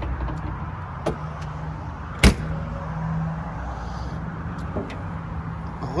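A single sharp latch clunk a little over two seconds in as a 1969 Mercedes-Benz 280 SL is opened up to reach the engine, with a few faint clicks, over a steady low hum.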